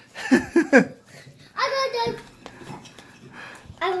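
Voices, mostly a young child's, sounding in two short stretches without clear words, with a few faint clicks in between.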